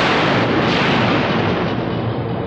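A film sound-effect blast: a sudden boom, then a long noisy rumble dying away.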